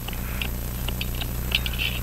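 Faint, scattered little clicks and scrapes of a small watchmaker's screwdriver turning a case screw in a Hamilton 974 pocket watch, over a steady low hum.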